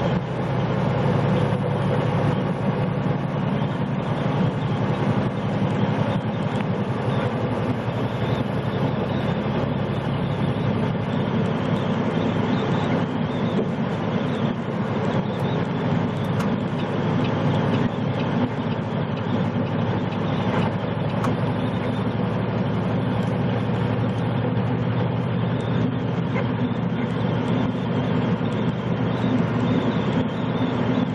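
Steady drone of a semi-truck's diesel engine and tyre noise heard from inside the cab while cruising at highway speed.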